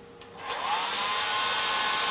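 A small handheld electric blower is switched on about half a second in. Its motor whine rises in pitch as it spins up, then holds steady under a rush of blown air aimed at a gear-driven wind car's propeller.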